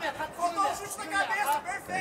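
Faint voices talking, quieter than the commentary before and after.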